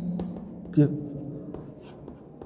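Chalk scratching and tapping on a blackboard as words are written by hand. A man's drawn-out voice sounds at the start and again about a second in.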